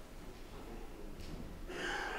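Quiet room tone in a hall, then near the end a short, louder breathy sound from a person, like a sharp breath or a whisper.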